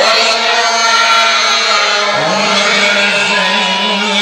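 A man's voice chanting Maulid recitation in long drawn-out notes with wavering melodic ornaments; about two seconds in, a second voice slides up into the held note.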